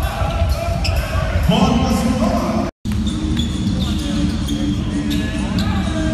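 Live basketball game sound: the ball bouncing on a hardwood court, with voices calling out on the floor. The audio cuts out completely for a moment a little under three seconds in.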